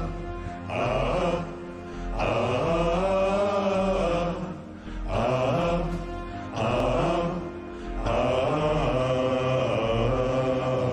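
Instrumental musical-theatre backing music. Low, held chords come in phrases a second or two long, swelling and dipping between them.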